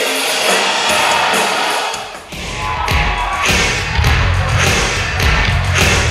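Live industrial rock band amplified through a club PA. For the first two seconds there is little bass; after a short drop in level, a new song starts with heavy bass and drum hits about every half second.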